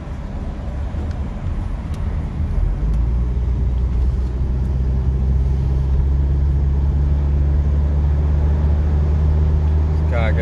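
Inside a moving car at highway speed: a steady low drone of engine and road noise, which grows louder and fuller about three seconds in and then holds steady.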